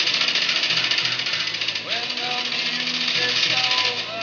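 A loud, rapid rattle of sharp strokes, many a second and unbroken throughout, over quieter background music.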